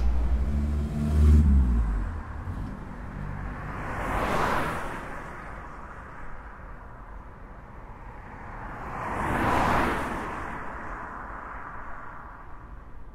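Two cars passing by one after the other, each swelling and then fading over about three seconds, the first loudest about four seconds in and the second near ten seconds. A low hum fades out over the first two seconds.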